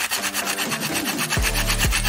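An abrasive pad scrubbed rapidly back and forth against a metal aerosol spray-paint can, a fast rasping rub as it scuffs the printed coating off the can.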